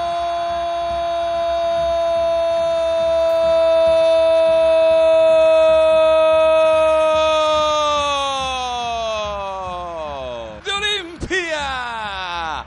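A Spanish-language football commentator's drawn-out goal call, 'gol', held on one steady high note for about eight seconds. The note then slides down in pitch and breaks off into short wavering vocal sounds near the end.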